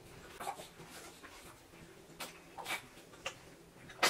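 A baby giving a few short, soft whimpers and fussing noises.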